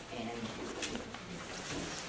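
Meeting-room background: one brief spoken word, then low, indistinct voices with a single small click about a second in.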